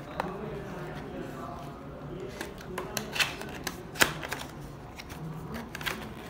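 Cardboard packaging being handled and opened: a run of short scrapes, taps and clicks as the inner tray is slid out of its paper sleeve, starting about two seconds in, with the sharpest click about four seconds in.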